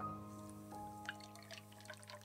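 Custard base of milk and egg yolk poured from a bowl through a fine wire-mesh sieve into a saucepan, dripping and spattering softly through the mesh from about half a second in. Soft piano music plays over it.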